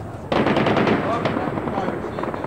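A burst of rapid automatic gunfire breaks out suddenly about a third of a second in, a dense string of sharp cracks. It carries on more thinly to the end, with voices mixed in.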